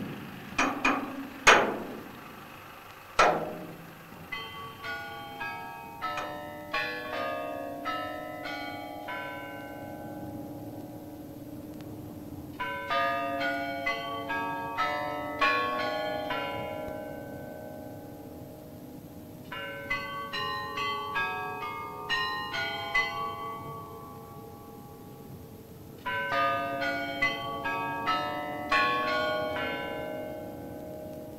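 A few sharp metallic knocks in the first three seconds, then bells ringing runs of notes in four phrases, a few notes a second, each note ringing on under the next, with short pauses between the phrases.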